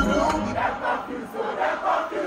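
Large concert crowd shouting and chanting together, many voices at once, heard from inside the audience.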